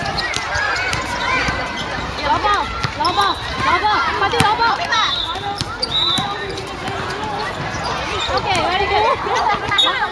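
Many voices of players and onlookers calling out across a basketball court, with a basketball bouncing on the hard court surface now and then as it is dribbled.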